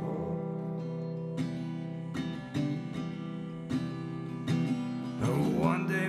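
Martin LX1E small-bodied acoustic guitar strummed in an instrumental passage of a song, chords ringing and renewed by a strum about every second. A brief sliding sound comes in near the end.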